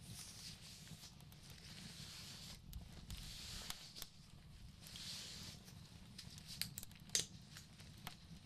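Soft rustling and light scattered clicks of a gauze bandage being handled and wrapped close to the microphone, with one sharper click about seven seconds in.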